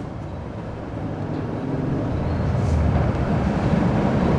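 A low rumble with no speech over it, swelling steadily louder.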